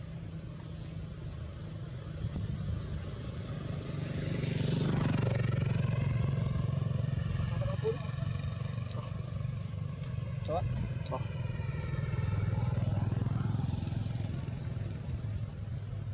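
A motor vehicle's engine running nearby, a steady low hum that swells louder twice as the engine's pitch slowly shifts. A few faint short squeaks are heard in the middle.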